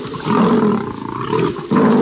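Lion roaring, a sound effect for an animated lion. There is one long roar, then a brief break about one and a half seconds in before another roar starts.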